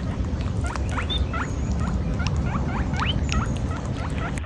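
A quick series of short, rising squeaky chirps, two or three a second, over a steady low rumble.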